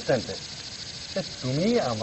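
Steady, rapid chirping of night insects, high-pitched and even, running under the dialogue; a man's voice speaks briefly at the start and again in the second half.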